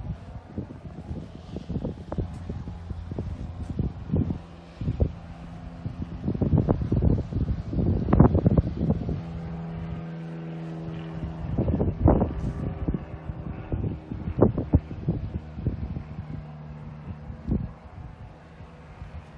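Wind buffeting the microphone in irregular gusts, with a steady low hum underneath.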